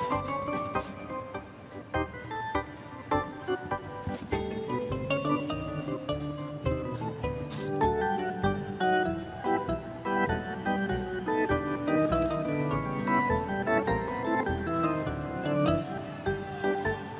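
Music with a moving melody of held notes, playing steadily.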